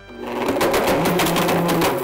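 Blendtec blender motor started up and running at full speed, grinding something hard with a dense, loud clatter that builds quickly after starting.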